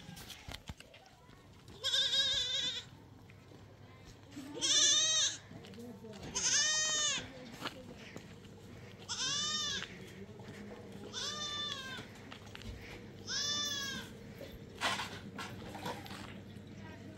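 Young goats or sheep bleating: six high, wavering calls, each under a second long and about two seconds apart.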